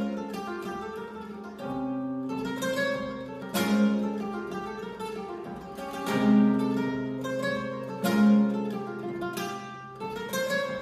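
Solo flamenco guitar playing a siguiriyas falseta: picked single-note lines ringing over held bass notes, punctuated by three loud strummed chord accents spread through the phrase.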